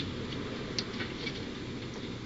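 Steady background hum and hiss with a couple of faint ticks a little under a second in.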